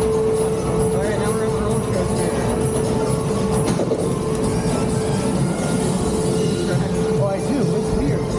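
Mack Rides water-coaster boat rolling along its track: a steady low rumble with a constant hum over it.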